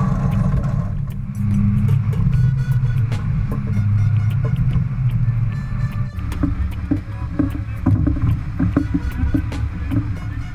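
Wind rumbling on the microphone and water rushing along the hull of a racing yacht under sail, with music playing over it.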